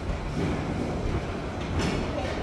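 Busy railway station ambience: a steady low rumble and hiss from trains and the running escalator, with a brief clatter near the end.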